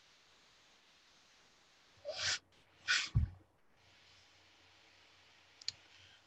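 A person breathing out after a hit from a vape pen: two short breaths about two and three seconds in, with silence around them. A faint click comes near the end.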